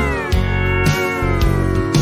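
Instrumental fill in a country song between sung lines: a steel guitar slides down in pitch over bass and drums.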